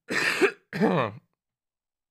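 A man clearing his throat in two short bursts, a rough one and then a voiced one falling in pitch, over about the first second.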